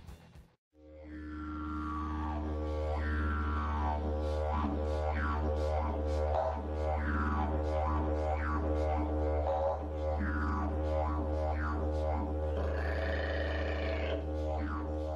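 Didgeridoo music: a steady low drone whose overtones sweep up and down over and over. It fades in after a brief gap near the start.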